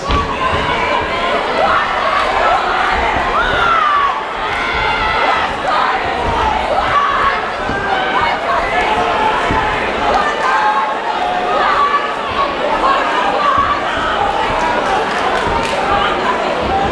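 Boxing crowd cheering and shouting, many voices overlapping at a steady level.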